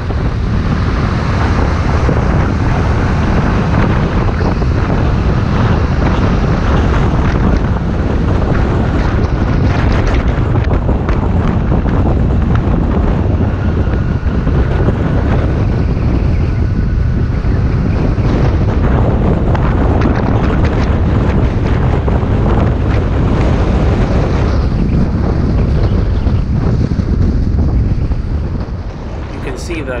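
Heavy wind buffeting on a head-mounted camera's microphone while riding a scooter at speed, loud and steady, mixed with the scooter's road and engine noise. It builds just after the start and eases off near the end.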